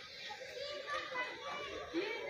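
Background chatter of several voices, children's among them, with no clear words.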